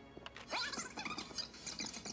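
Video footage playing back fast on a handheld camera: quick, squeaky, high-pitched chattering voices over soft background music.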